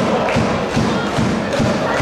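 Football supporters beating a bass drum in a steady rhythm, about three to four beats a second, over the noise of a stadium crowd.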